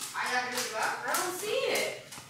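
Mostly voices talking indistinctly, with a couple of short, sharp sounds among them.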